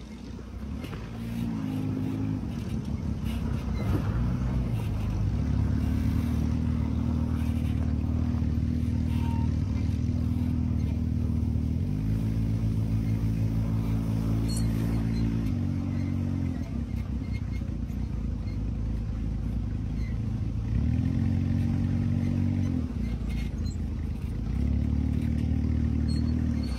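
Dune buggy engine running under way, its low note holding steady for stretches and stepping up and down in pitch several times as the throttle changes.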